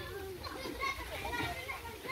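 Children playing, heard as faint, overlapping high-pitched voices.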